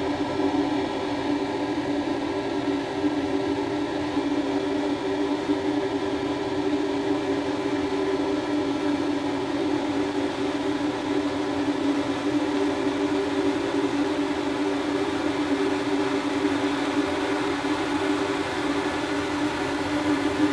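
Steady mechanical hum with two low droning tones, unchanging throughout.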